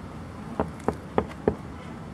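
Knocking on a car's side window: four quick, sharp raps about a third of a second apart, starting about half a second in.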